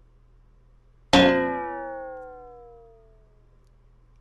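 A single metallic clang, struck once about a second in, ringing with several tones that slide down in pitch as it fades over about two seconds.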